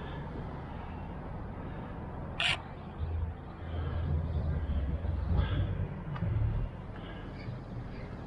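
Outdoor city ambience with a low rumble that swells for a few seconds in the middle, and one short sharp click about two and a half seconds in.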